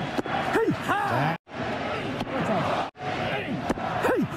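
A baseball pitcher's short, effortful grunts as he throws, in three brief broadcast clips spliced together with abrupt cuts between them, over ballpark crowd noise.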